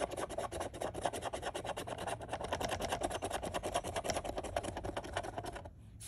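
A coin scratching the coating off a scratch-off lottery ticket in rapid, even back-and-forth strokes that stop shortly before the end.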